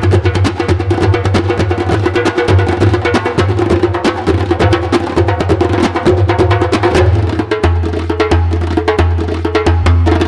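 An ensemble of clay darbukas, multitracked, playing a fast interlocking rhythm: rapid sharp high strokes over deep low bass strokes. The low part shifts to a deeper, heavier pattern about three-quarters of the way through.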